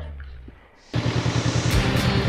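Background music fading out, then about a second in a motorcycle engine cuts in, running at low revs with an even pulsing beat, heard from on board the bike.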